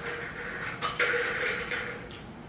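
A red hardcover notebook being handled: short scuffing rustles, the longest about a second in, as its elastic band is slipped off and the cover is opened.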